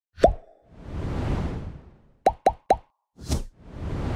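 Sound effects of an animated logo intro: a sharp pop that rises in pitch, a swelling whoosh, three quick rising pops about a quarter second apart, then two more whooshes.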